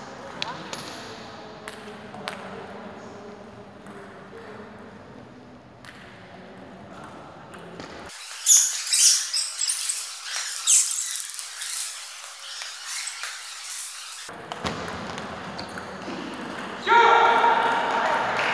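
A table tennis ball clicking off bats and table in the first few seconds, echoing in a large sports hall, with voices in the hall. About eight seconds in comes a stretch of loud, sharp, thin sounds, the loudest part, and a voice rises near the end.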